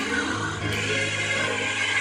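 A recorded gospel song with a choir singing, played through a loudspeaker in the room as backing for a mime performance.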